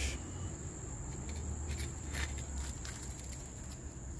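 A steady, high-pitched insect chorus runs throughout, with a few soft clicks and scrapes of metal tongs on the wire grill mesh as the grilled fish is pulled open.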